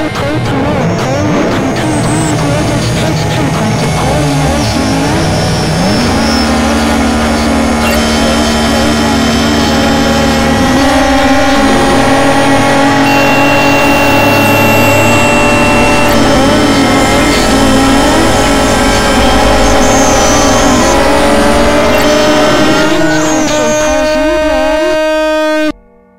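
Loud, dense noise-music collage: many sustained drones and tones stacked on top of one another, with warbling, gliding pitches. Layers come in and drop out, with clear changes about six and eleven seconds in.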